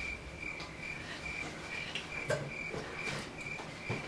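Crickets chirping faintly and evenly, about three chirps a second.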